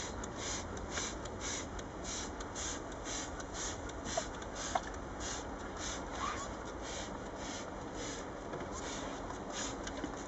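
Trigger hand sprayer misting lactic acid onto a comb of honeybees against varroa mites: a quick run of short hissing sprays, about two and a half a second.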